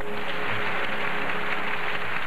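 Audience applauding steadily right as a song ends.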